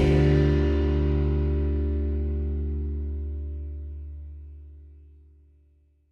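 Background music ending on one long held chord that rings and fades away over about five seconds.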